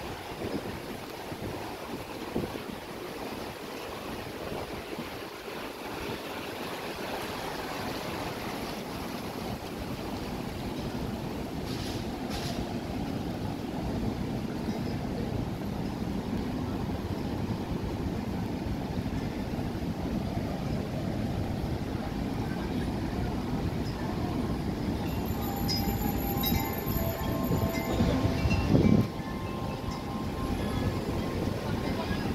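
Shallow stream water rushing steadily over stones and low steps, growing gradually louder, with a brief louder burst just before the end.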